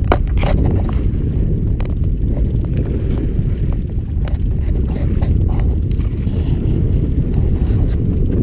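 Steady wind buffeting the microphone, a loud low rumble, with a few faint clicks scattered through it.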